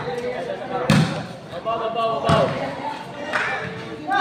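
A game ball being struck in play, three sharp thuds roughly a second apart, over spectators' voices.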